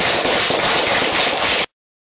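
Audience applauding, many hands clapping densely together. It cuts off suddenly near the end.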